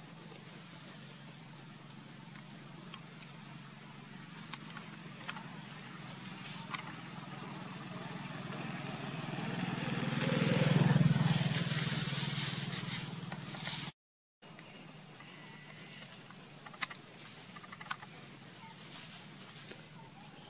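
A motor vehicle passing, swelling to a peak about eleven seconds in and then fading, over a steady low hum, with scattered sharp clicks. The sound drops out completely for half a second shortly after the peak.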